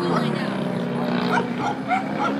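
An Extra 300 LX R/C aerobatic model plane's motor drones steadily overhead. Over it come repeated short, high yelping calls and voices.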